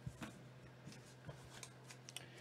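Faint handling of trading cards: a few small clicks and rustles, the loudest right at the start and about a quarter second in, over a low steady hum.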